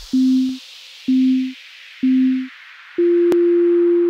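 Workout interval timer countdown beeps: three short low beeps a second apart, then one longer, higher beep that marks the switch to the next exercise. Under them a whoosh falls in pitch in the background electronic music.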